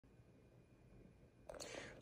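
Near silence: room tone, then a short, faint breath about one and a half seconds in, just before speech begins.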